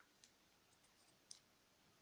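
Near silence broken by a few faint, short clicks: scissors snipping paper, with two clearer snips about a quarter second in and a little past halfway.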